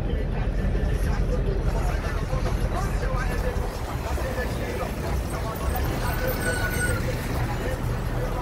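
Road traffic noise from cars and trucks in slow, queued traffic: a steady low engine rumble throughout, with people's voices talking nearby.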